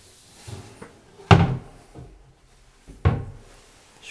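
Bathroom vanity cabinet doors being shut, two sharp knocks about two seconds apart, one door after the other.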